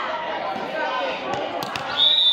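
Volleyballs being struck and bouncing on a hardwood gym floor, with a couple of sharp smacks near the end, amid players' background chatter in a large echoing gym.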